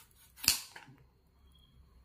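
A large kitchen knife slicing the end off a watermelon, with one sharp knock about half a second in as the blade comes through the rind onto the granite countertop.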